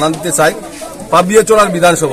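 A man speaking, delivering a speech.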